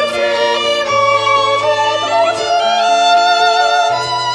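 Two violins playing a melody with vibrato over piano accompaniment.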